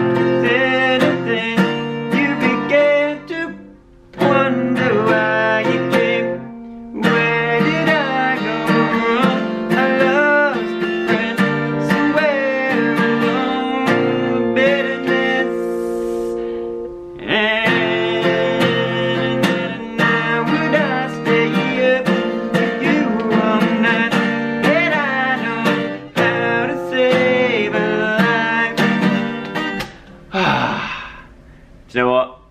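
A man singing while strumming chords on an acoustic guitar, with a few brief breaks where the playing stops and restarts.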